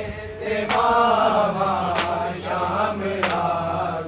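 A group of men chanting a Punjabi noha (Shia lament) in unison, with sharp hand strikes of matam (chest-beating) keeping a steady beat about every second and a quarter.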